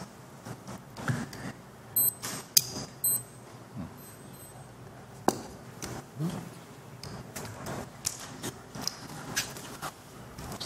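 Scattered light clicks and knocks of handling and movement around a podium in a meeting room, with a few short high rings about two and three seconds in and faint murmuring voices.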